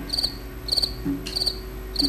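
A cricket chirping steadily: short high trilled chirps, about one every 0.6 s, three in a row.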